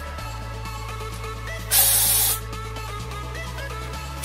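Aerosol can of Batiste Original dry shampoo spraying: one hissing burst of about half a second near the middle, over steady background music.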